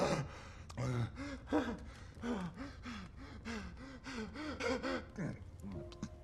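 A man's voice gasping in short, strained breaths, about three a second, without words.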